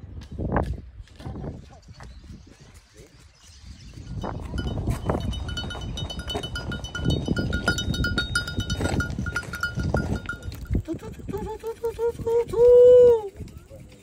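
Bells on a herd of goats clinking steadily as the goats move past, over footsteps on stony ground. Near the end a person gives a loud, drawn-out sung call, 'tu tu'.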